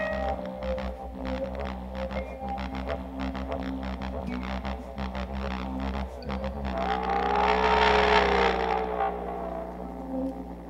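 Live orchestra music: a held chord breaks off at the start, leaving a soft, steady low drone under scattered light percussive clicks. About two-thirds of the way in, a tone swells up and bends in pitch, then fades.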